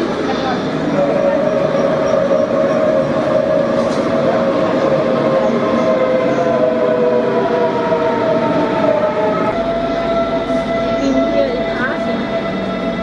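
Electric S-Bahn commuter train at a station platform: a steady rumble with a whine of several tones, one of them slowly falling in pitch.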